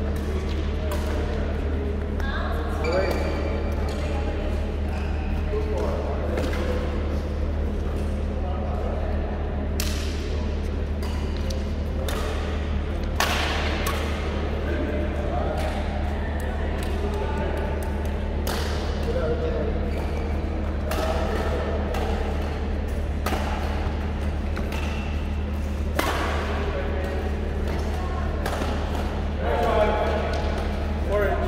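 Badminton rackets striking a shuttlecock in doubles rallies: sharp hits every second or two, with short pauses between rallies.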